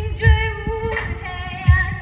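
Live band music: a girl's lead voice sings long held notes, stepping up in pitch about a second in, over band accompaniment with drum beats, one about a third of a second in and another near the end.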